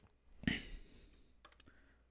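A short click about half a second in, then a much fainter tick about a second later, over otherwise near-quiet room tone.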